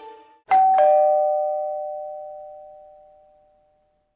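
A two-note ding-dong chime like a doorbell, a higher tone then a lower one a quarter second later, both ringing out and dying away over about three seconds. Before it, the tail of background music fades out.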